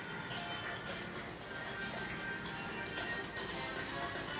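Background music of a TV channel's evening programme-schedule segment, playing from a television set's speaker.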